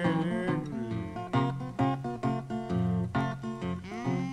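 Instrumental break in a laid-back old-time jazz-blues song: acoustic guitar picking quick plucked notes over low notes underneath, with other instruments sliding in pitch early on.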